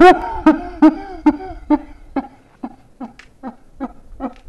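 A man laughing hard in a long run of 'ha' bursts, about two or three a second, loudest in the first second and fading after.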